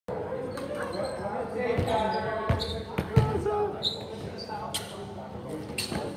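People's voices echoing in a gymnasium, with a few sharp thuds of a volleyball hitting the hardwood floor.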